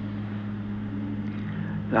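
Steady low electrical hum with background hiss from a microphone and sound system. A man's voice starts again at the very end.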